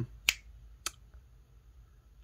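Two short, sharp clicks about half a second apart, the first the stronger, over faint room tone.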